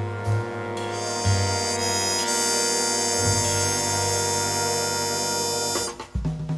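Jazz big band holding a long sustained chord in the horns and saxophones over upright bass, with the bass note changing a couple of times; the chord cuts off just before the end.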